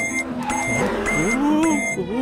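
Cartoon sound effect: a high electronic beep repeating about every half second, with a rising-and-falling voice-like wail under it.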